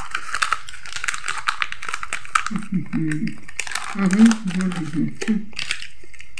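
A thin plastic snack wrapper crinkling and rustling as it is handled, with a few short murmured vocal sounds in the middle.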